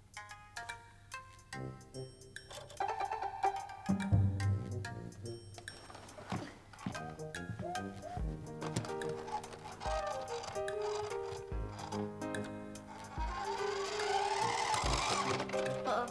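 Background music carried by a sequence of held notes, with soft low beats every second or two; near the end a brief rising swell of noise comes in.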